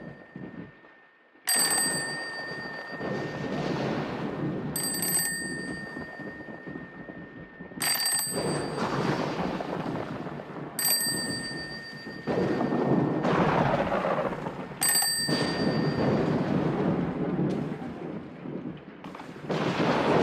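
Toy telephone bell ringing in five short rings, about three seconds apart, over a steady rumbling noise.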